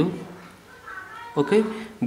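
A man speaking in short phrases with pauses. In the pause about a second in there is a brief, faint, high-pitched rising call.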